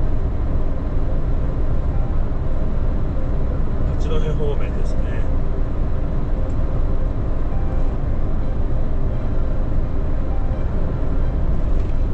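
Steady low rumble of a large truck's engine and road noise heard inside the cab while cruising at highway speed, with a brief bit of voice about four seconds in.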